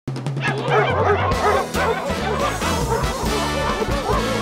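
Upbeat theme music with a moving bass line, with many short dog barks and yips over it.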